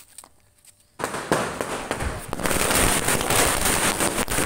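A chain of firecrackers going off on the ground. After about a second of near quiet, a dense, rapid run of sharp bangs starts suddenly and keeps on without a break.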